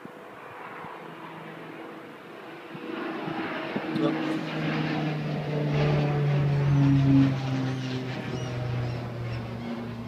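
Engine drone of a passing aircraft: it swells from about three seconds in, is loudest around seven seconds, then eases off, its pitch sinking slowly as it goes by.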